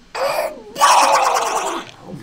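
A man doing a Donald Duck voice impression, a raspy buzzing duck-like voice made with a lot of cheek movement: a short burst, then a longer garbled stretch of about a second.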